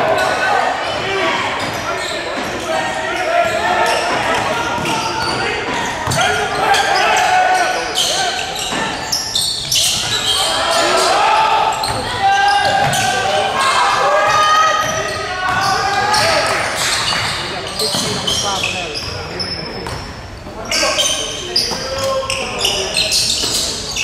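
Basketball game play on a hardwood gym floor: a ball bouncing with repeated sharp knocks, mixed with voices from players and spectators, all echoing in the gymnasium.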